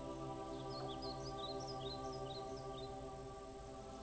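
Soft ambient background music of sustained, held tones. A quick run of high chirping notes, like a bird's, sounds through the middle.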